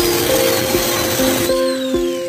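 Background music with steady, plucked-sounding notes over an angle grinder grinding steel. About one and a half seconds in the grinder is switched off, and its high whine falls away as the disc spins down.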